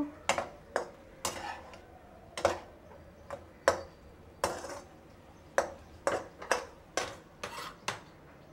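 Metal slotted spatula clinking and scraping against a metal wok while stirring chicken pieces, roughly two sharp clinks a second at uneven intervals.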